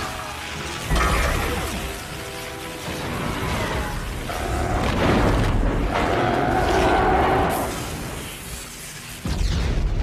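Film battle sound mix: a music score over lightning blasts and explosions, with sudden loud booms about a second in and again near the end.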